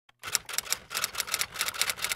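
A quick series of sharp clicks, about seven a second, starting a moment in: an intro sound effect under the channel logo.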